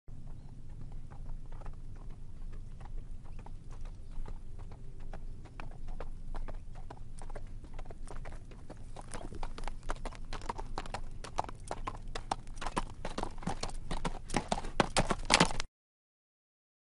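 Horse hoofbeats clip-clopping over a low rumble, sparse at first, then growing louder and denser through the second half before cutting off suddenly near the end.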